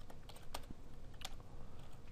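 Computer keyboard keys clicking as code is typed: a few scattered, faint keystrokes.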